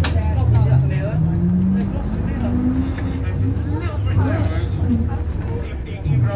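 Leyland Panther bus's diesel engine, heard from inside the saloon, rising in pitch over the first couple of seconds as the bus picks up speed, then running on steadily. A sharp click comes right at the start.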